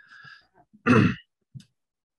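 A man clearing his throat once, sharply, about a second in, after a faint breath.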